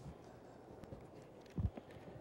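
Footsteps of a man in hard-soled shoes walking toward the stage: a few scattered, faint steps, the loudest a dull thud about a second and a half in, over quiet hall room tone.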